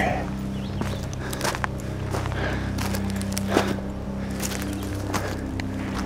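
Footsteps crunching on gravel and debris, a scattering of short irregular steps, over a steady low hum.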